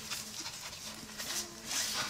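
Faint rustling of a paper sleeve being handled and flexed, swelling slightly near the end.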